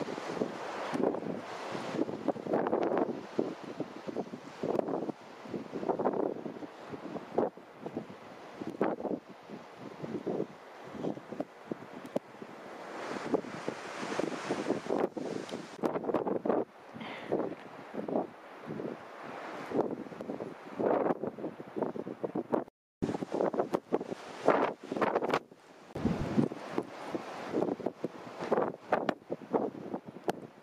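Wind buffeting the microphone in uneven gusts, rising and falling all the while, with a sudden break of a fraction of a second about two-thirds of the way through.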